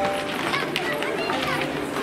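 Many children's voices chattering at once, with music playing in the background.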